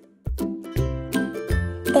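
Background music starts after a brief near-silent gap, with sustained pitched notes over a steady beat.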